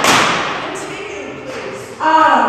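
A loud thump at the start, followed by a rustle of handling noise that fades over about a second and a half, as poster boards on an easel beside the podium microphone are moved.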